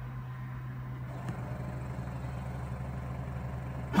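Charmhigh CHMT desktop pick-and-place machine idling with a steady low hum, and a faint click about a second in.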